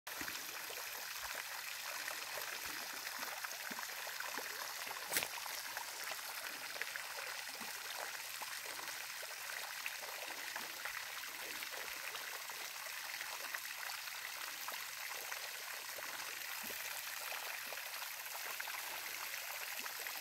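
Small pond fountain throwing jets of water that splash steadily onto the pond surface, an even splashing hiss, with one sharp click about five seconds in.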